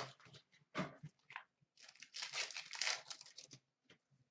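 Hockey card pack wrappers crinkling and tearing as packs are ripped open, in several short bursts, the longest from about two seconds in.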